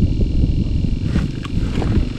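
Wind buffeting the microphone: a loud, irregular low noise with no steady pitch.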